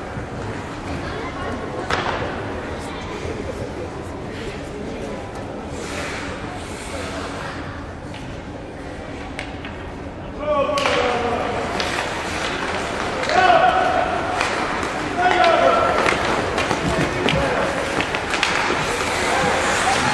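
Rink sound during a youth ice hockey game in a large hall: a low din with scattered knocks of sticks and puck on the ice. About halfway in, as play restarts from a faceoff, it gets louder, with voices shouting and calling out over the clatter.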